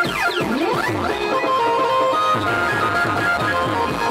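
Loud band music played over a large speaker stack. Falling and rising pitch glides sound in the first second, then a held melody runs over a fast, even beat of about four low thumps a second.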